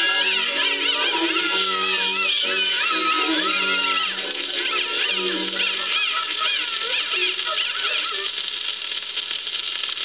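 Closing bars of an old shellac 78 record playing on a turntable: wavering vocal notes over a band accompaniment. The bass stops about six seconds in, the rest dies away soon after, and only the record's surface hiss is left near the end.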